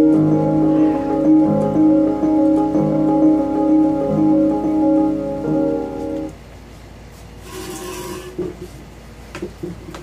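Electronic keyboard on an electric-piano voice playing slow held chords over a bass note that changes about every second and a half, stopping about six seconds in. Faint rustling and a short laugh follow near the end.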